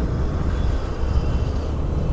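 Steady low rumble of a motorbike or scooter riding along: engine, tyre and wind noise heard from the rider's own camera.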